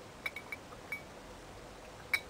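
Glass bottle neck clinking lightly against the rim of a small shot glass as a few drops of water are poured from it: four or five faint, short clinks in the first second.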